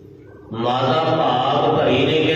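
A man's voice begins chanting gurbani about half a second in, singing on long, held notes after a brief moment of faint low hum.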